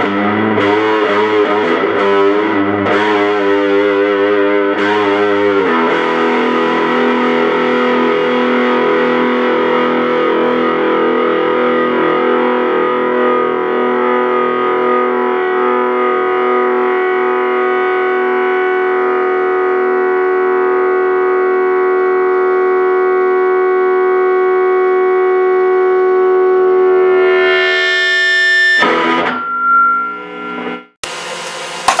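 Electric guitar through a cranked Laney Cub 8 tube amp driven by a Donner Morpher distortion pedal. It plays a few seconds of distorted chords, then one chord is left ringing for about twenty seconds. Near the end the chord swells louder and brighter, then stops suddenly.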